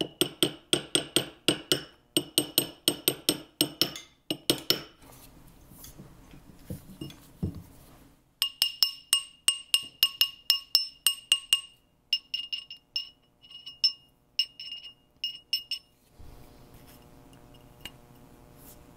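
Small ball-peen hammer tapping a thin metal bezel cup on a steel ring mandrel to round it: quick runs of ringing metal-on-metal taps, about three to four a second, with pauses between runs and the taps thinning out towards the end.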